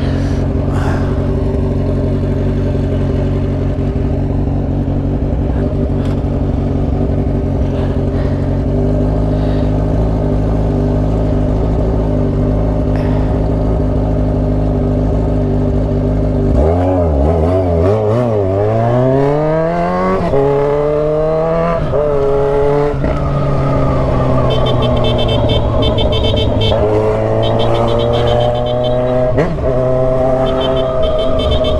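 Motorcycle engine idling steadily, then, a little past halfway, pulling away: the revs climb, drop at a quick upshift, climb again through a second upshift, and settle into a steady cruise.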